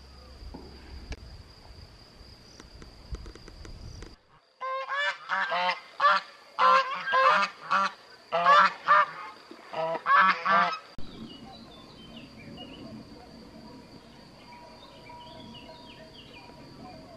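Geese honking in a loud run of about a dozen repeated calls, starting about four seconds in and cutting off suddenly some six seconds later. Before and after, a steady high insect buzz, with light bird chirps near the end.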